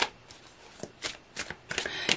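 A tarot deck being shuffled by hand: several short, sharp card flicks with quiet between them, most of them in the second half.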